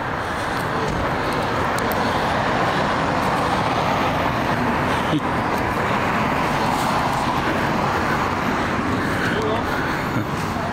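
Steady road traffic noise from cars passing on the street.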